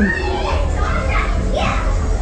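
Lively people's voices, with a brief rising call near the end, over a steady low rumble and background music.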